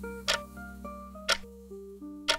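Countdown-timer sound effect: a clock tick about once a second, twice here, over quiet background music with a held low note and shifting higher notes.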